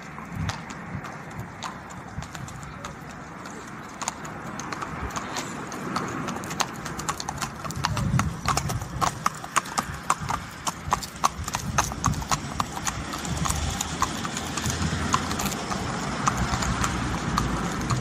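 Two horses walking on tarmac, their hooves clip-clopping in a quick, uneven run of sharp knocks. The hoofbeats get louder as the horses come close and are loudest about halfway through.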